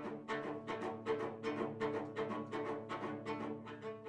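Marimba and cello playing together: even mallet strokes on the marimba, about five a second, under a sustained bowed cello line.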